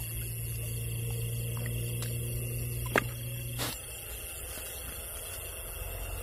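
A steady low hum that cuts off suddenly a little past halfway, with a few sharp clicks or knocks, the loudest about three seconds in, over a continuous high hiss.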